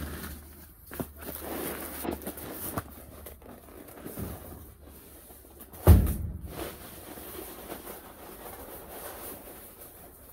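Workshop handling noises: small knocks and shuffling, then one heavy thump about six seconds in as a cardboard box of crushed cobalt blue glass is set down on the timber slab.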